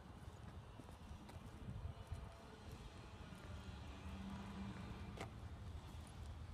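Faint footsteps on asphalt pavement over a low steady rumble, with one sharper click about five seconds in.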